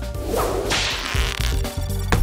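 A swishing whoosh sound effect: one burst of hiss that swells about half a second in and fades away by about a second and a half, marking a cut between shots.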